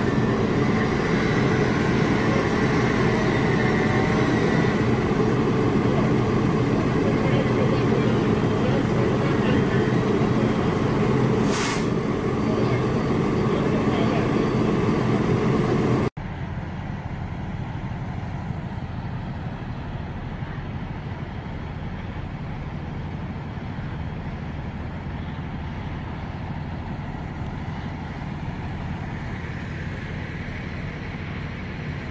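Fire engine's diesel engine running steady and loud while pumping to hose lines, with one short hiss of air about two-thirds of the way in. After a sudden cut, only a quieter, even rumble of distant engines remains.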